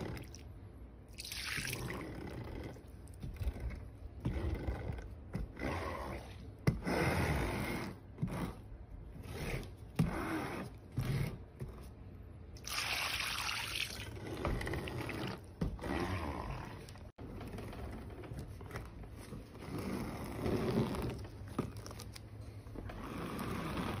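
Metal scraper blade dragged across a silicone wax-melt mold, scraping off excess wax in a series of strokes a second or two long, with small clicks in between.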